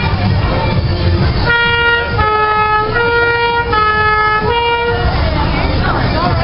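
Two-tone emergency-vehicle horn sounding the alternating hi-lo 'nee-naw', about five notes each under a second long, starting a second and a half in and stopping near the end, over crowd and street noise.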